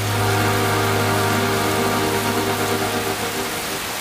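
The song's last held chord fading out over about three seconds under a steady hiss of rain.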